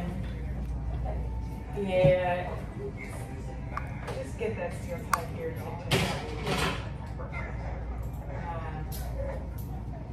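Indistinct voices in short bursts over a steady low room hum, with a single sharp click about five seconds in.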